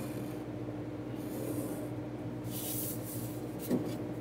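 Pencil drawn along the edge of a plastic drafting triangle on paper: two or three short scratchy strokes, with a light knock near the end. A steady low hum runs underneath.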